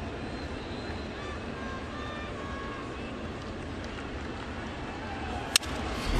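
Steady ballpark crowd noise, then one sharp crack of a wooden baseball bat meeting a pitch about five and a half seconds in, sending a ground ball to the infield.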